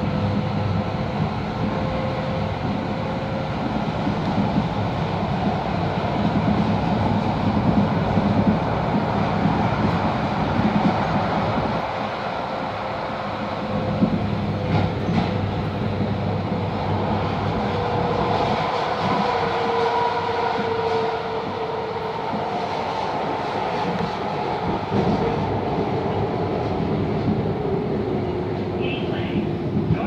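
MAX light rail train heard from inside the passenger car while running: a steady rumble of wheels on rail under an electric motor whine. The whine falls in pitch over the second half.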